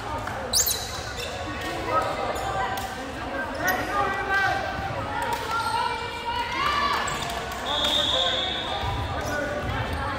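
Indoor volleyball gym between rallies: players and spectators talking and calling out in a reverberant hall, with a ball bouncing on the hardwood floor. A referee's whistle blows once, steady for about a second, around eight seconds in, as the receiving team settles into its stance for the serve.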